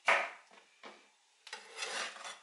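Kitchen knife cutting fresh pineapple on a wooden cutting board: a sharp cut that strikes the board and fades quickly, followed by two lighter knocks. About a second and a half in, pineapple spears scrape and slide across the board.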